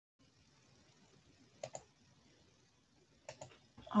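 Near silence broken by two pairs of short, faint computer clicks, about a second and a half apart.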